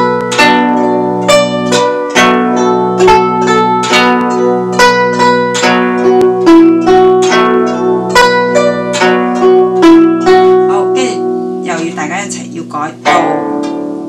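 Guzheng plucked with finger picks: a brisk run of bright, ringing melody notes over sustained low bass notes. The playing thins out about eleven seconds in, then a few more plucks come near the end.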